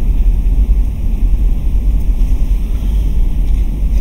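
A loud, steady low rumble of noise with no clear tone or rhythm.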